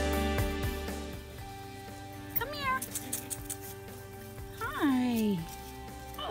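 Scottish terrier puppy squealing twice: a short high squeal about halfway through, then a longer whine that falls in pitch near the end. Background music plays throughout.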